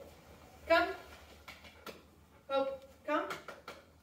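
A person's voice in a few short calls, with a few light clicks between them.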